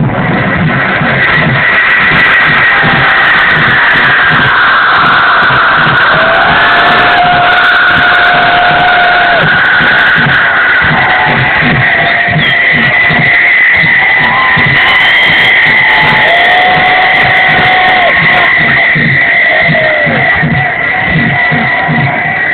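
Loud electronic dance music played over a large party sound system: a steady, evenly pulsing beat under long held synth tones.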